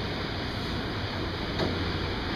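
Steady whir of a ventilation fan with a low hum underneath.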